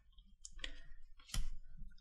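Quiet handling of paper index cards on a wooden table as one card is swapped for the next: a few light clicks, then a louder tap a little past halfway.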